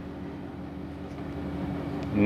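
Steady low hum of several held tones under faint room noise, with no distinct event standing out.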